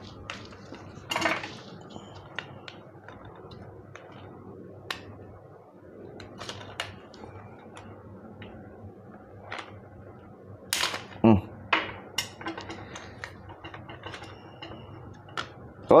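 Scattered light clicks and knocks of a plastic mosquito-racket handle being pried and handled apart as its circuit board and wires are worked loose, with a louder cluster of clicks about eleven seconds in.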